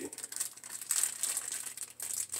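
Plastic packaging crinkling in the hands, with irregular crackles, as a small wrapped amplifier part (the bass remote knob) is unwrapped.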